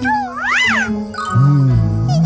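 Cartoon sounds over background music: a high character cry that swoops up and down in the first second, then a dairy cow's low moo starting about two-thirds of the way in and wavering in pitch.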